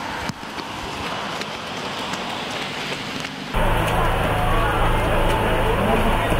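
Rainy outdoor street ambience: a steady hiss of rain and wet pavement. About three and a half seconds in it cuts to a louder stretch with a deep rumble underneath.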